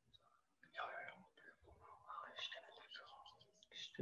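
Faint whispered speech, a person talking under their breath, starting about a second in.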